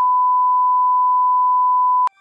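Broadcast test tone played with colour bars: one steady, pure, unwavering beep at a single pitch, marking the interrupted programme.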